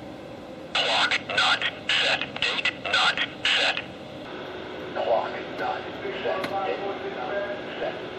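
A voice comes through a handheld two-way radio's small speaker, loud and thin-sounding, for about three seconds starting about a second in: a test transmission over the repeater while its transmit audio level is being turned down. Fainter talk follows.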